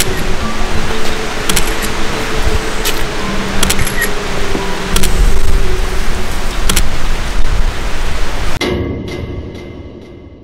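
Eerie background music over a loud, static-like hiss, with a few sharp clicks. Near the end it cuts off suddenly and trails away in a fading echo.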